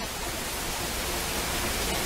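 A steady, even hiss of background noise, with no speech.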